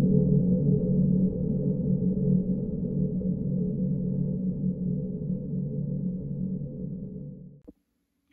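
Low synthesized drone of an animated logo intro: a deep, steady electronic hum that fades out shortly before the end.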